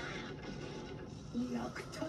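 Anime episode audio playing back: a character speaking, loudest near the end, over background music.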